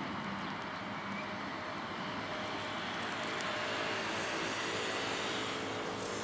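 A steady engine drone, swelling a little in the middle, with faint sharp ticks over it from Eurasian tree sparrows pecking millet seed from a hand.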